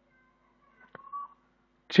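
Pause between spoken words: faint room tone with a low hum, a soft click about a second in and a brief faint tone just after it.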